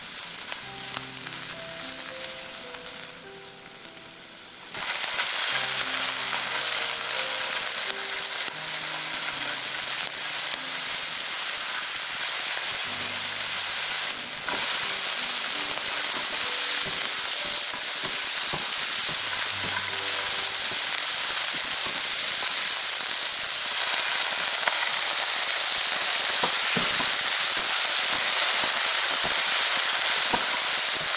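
Food sizzling in hot oil in a nonstick wok while it is stir-fried with a silicone spatula: first chopped onion, garlic, scallions and dried chilies, then cauliflower florets. The sizzle dips for a moment about three to four seconds in, then runs louder and steady.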